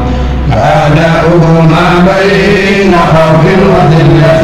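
Voices chanting Arabic devotional verse in a melodic, drawn-out style with long held notes.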